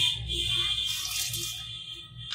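Soaked rice being poured from a bowl into a steel pot of hot water, over steady background music.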